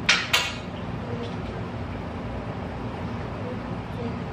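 Two quick clinks of tableware right at the start, then a steady low room hum.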